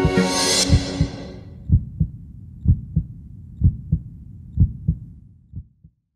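Music swells and fades out in the first second and a half. A heartbeat sound effect follows: five double beats, lub-dub, about a second apart, the last ones fading out.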